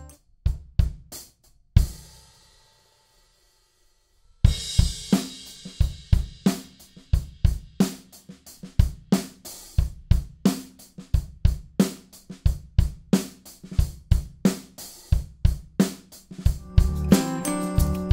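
Drum kit played alone with sticks, a studio recording of snare, kick and Istanbul cymbals. A fill ends on a hit about two seconds in, followed by a pause of about two seconds. A steady groove then starts and runs on, and backing music comes back in under the drums near the end.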